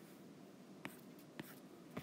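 Faint taps of a stylus on a tablet's glass touchscreen while drawing, three light ticks about half a second apart over a quiet room hiss.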